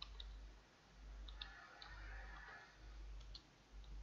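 Faint computer keyboard keystrokes: a few scattered clicks as a name is typed, over a low electrical hum.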